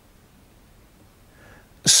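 Quiet room tone, then a faint intake of breath and a man's voice starting to speak near the end.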